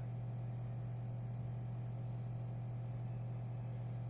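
A steady low hum with a faint even hiss underneath: the background noise of a microphone and room, with no voice.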